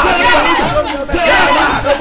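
A man shouting speech into a microphone, amplified over a crowd that is shouting along.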